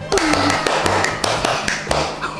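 A quick, uneven series of taps or clicks, about five a second, over background music.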